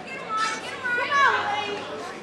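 High-pitched women's voices calling out over one another, their pitch sliding up and down, louder in the second half.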